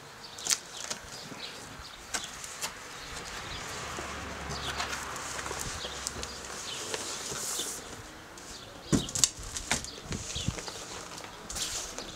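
A cardboard box being opened and unpacked by hand: flaps folding back and packaging rustling for several seconds, with scattered clicks, then a few sharp knocks and bumps about nine seconds in as a fabric tote bag is lifted out.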